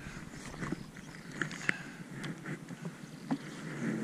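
Wind and road noise from a touring bicycle rolling along asphalt, with a few light ticks scattered through it.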